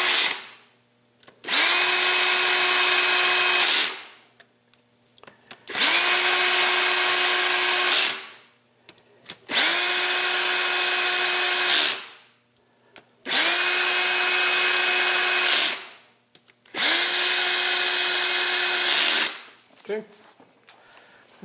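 Power drill with a socket driving valve cover bolts on a 1.8T engine, run in five bursts of about two and a half seconds each. Each burst spins up quickly to a steady whine and winds down as the drill is let off.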